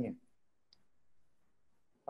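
A man's voice trails off, then near silence on a video call, broken by one faint click a little under a second in.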